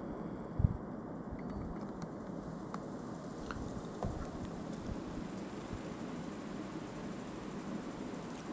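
Steady low background hum of a small room, with a soft thump about half a second in and a few faint clicks as a small diecast model airliner is picked up by hand.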